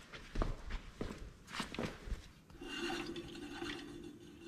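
Footsteps on a concrete shop floor. Then, from about two and a half seconds in, a steady rubbing whir from a trailer wheel hub spinning on its tapered cone bearings, not yet adjusted.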